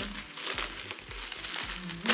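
Crumpled paper stuffing crinkling and rustling as it is pulled out of a handbag, in an irregular string of crackles.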